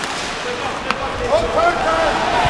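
Ice hockey arena crowd noise, with a single sharp click of a stick on the puck about a second in. Voices in the stands call out in rising and falling tones near the end.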